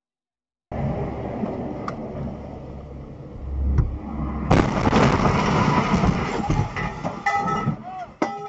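Dash-cam audio from a car at highway speed: steady road and engine noise, then a sudden loud bang about four and a half seconds in, followed by several seconds of loud rattling and rumbling as debris from a truck ahead is strewn across the road.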